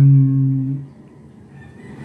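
A man's voice holding the word "ang" as a steady, level hum for about a second, then a pause with only faint room tone.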